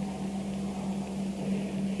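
Steady low electrical hum with an even background hiss: the room tone of an amplified, tape-recorded hall.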